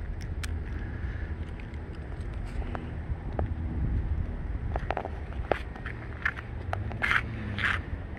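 Steady low outdoor rumble with scattered light clicks and scrapes, typical of handling noise and footsteps as a hand-held camera is carried across pavement.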